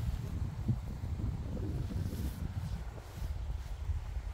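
Wind buffeting the microphone, an uneven low rumble that rises and falls in gusts.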